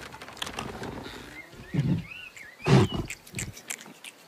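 Cartoon sound effects: two short, loud animal-like roars about a second apart, the second louder, with high whistling glides in between and light clicks throughout.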